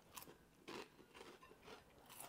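Faint chewing of a mouthful of noodles, with soft crunchy chews about twice a second.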